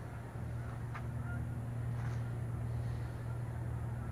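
A steady low mechanical hum, like a motor or engine running, that gets slightly louder a fraction of a second in, with a couple of faint ticks.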